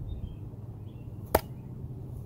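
A thrown OerLa OLHM-12 mini cleaver knife strikes and sticks point-first in a wooden log: one sharp impact a little over a second in, over a steady low hum.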